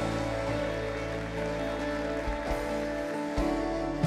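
Soft live background music of long sustained chords, with an electric guitar.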